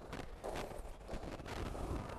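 Faint footsteps of heeled boots on a hard floor, a few irregular taps over a low, steady room rumble.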